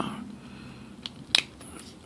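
Plastic parts of a Transformers Combiner Wars Skydive action figure clicking as they are handled and snapped into place: two small clicks about a second in, the second louder.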